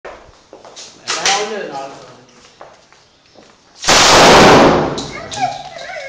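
A rifle fired in one rapid burst of six rounds about four seconds in, the shots running together into a single very loud blast of under a second, then dying away.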